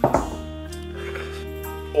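A drinking glass set down on a wooden table with one sharp knock at the start, over steady background music.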